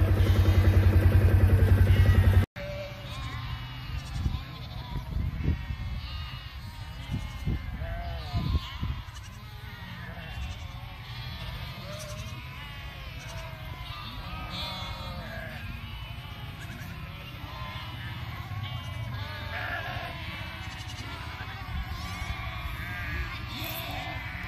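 An engine runs loudly for about two and a half seconds and then cuts off abruptly. After that comes a large flock of ewes and lambs, many overlapping bleats.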